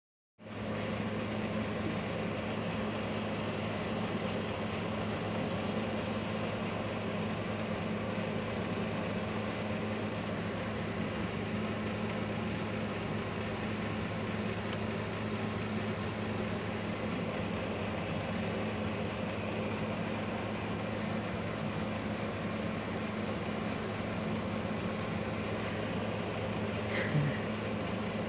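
A steady low mechanical hum over a constant hiss, unchanging throughout.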